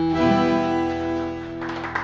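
Bandoneon and guitar ending a song on a long held closing chord that slowly fades; applause starts near the end.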